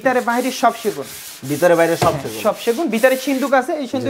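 A cloth rubbed over the polished surface of a carved teak wardrobe, giving a continuous run of squeaky rubbing tones that waver up and down in pitch.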